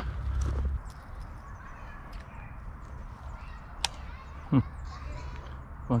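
Quiet creekside outdoor sound with faint bird chirps, a single sharp click just before four seconds in, and a short hummed 'hmm' near the end.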